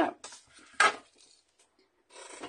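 Die-cut cardstock and cutting plates being handled on a craft mat: a sharp knock at the start and a short clatter just under a second in.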